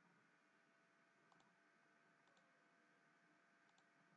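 Near silence with faint computer mouse clicks: three quick double clicks, spaced about a second apart.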